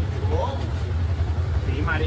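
Motorcycle engine idling with a steady low rumble, picked up on a phone's microphone, with people's voices faintly in the background.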